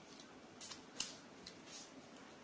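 Eggshell of a boiled balut (fertilised duck egg) being peeled by hand: four short, crisp crackles, the sharpest about a second in.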